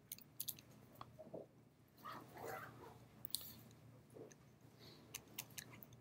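Faint irregular clicks and taps of a stylus on a drawing tablet as handwriting goes down, with a soft rustle about two seconds in; otherwise near silence.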